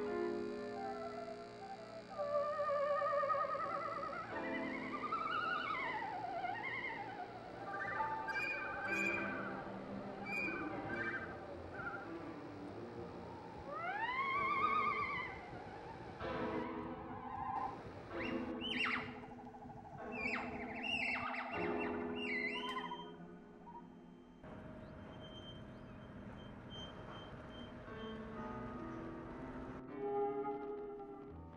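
Music led by a theremin: gliding, wavering tones and arching pitch slides over sustained chords, with a run of quick rising sweeps past the middle, then settling into a quieter held sound near the end.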